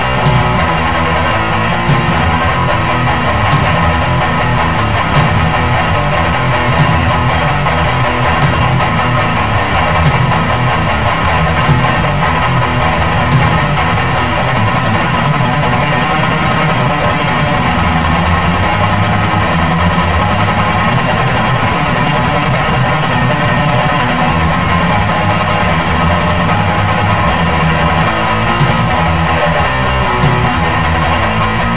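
Instrumental passage of a heavy metal song, driven by guitar, with a steady beat of sharp hits. About halfway through, a continuous high shimmering wash comes in and holds until near the end, when the spaced hits return.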